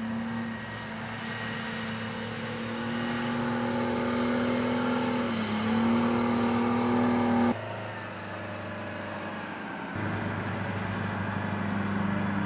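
Engines of military vehicles running as they drive along a dirt track: a steady engine drone that grows louder as a tracked armored carrier comes close, dipping briefly in pitch about five and a half seconds in. The sound changes abruptly twice, at about seven and a half and ten seconds in, the last part being a tracked M109A7 Paladin howitzer's engine running.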